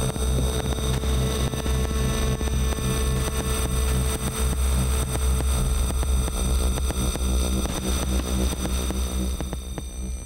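Electroacoustic music: a heavy low rumble with a throb pulsing on and off above it, scattered crackles and clicks, and thin high tones. It is a sound composition of melting ice and avalanches built from samples of icebergs.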